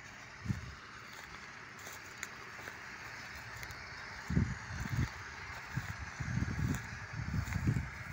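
Distant thunder rumbling in deep, uneven rolls through the second half, over a faint steady outdoor hiss.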